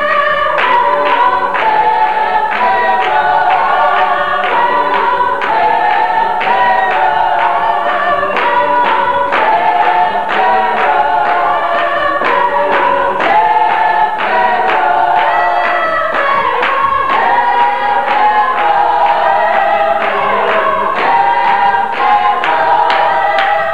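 Congregation singing a gospel song together with steady hand-clapping on the beat.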